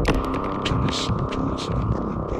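Experimental electronic music: a dense humming drone with irregular clicks and hissy noise bursts scattered over it, opening with a sharp hit.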